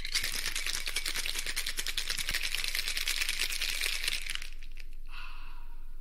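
A cocktail shaker being shaken hard and fast, ice rattling against the metal in a steady, rapid rattle. It stops about four and a half seconds in and gives way to a softer hiss.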